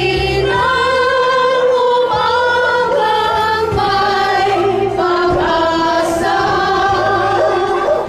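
A group of women singing a slow song together, one lead voice amplified through a handheld microphone and the others joining in, with long held notes.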